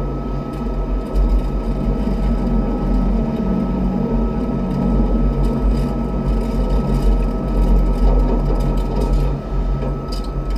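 Rhaetian Railway electric train running on metre-gauge track, heard from the driver's cab: a steady low rumble of wheels on rail with a constant high hum over it.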